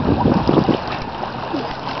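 Water splashing and sloshing around a child wading and paddling in a shallow river pool, over the steady rush of the river. The splashing is busiest in the first second and calmer after.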